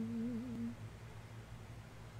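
A woman's brief, wavering 'hmm' hum lasting well under a second at the start, over a faint steady low background hum.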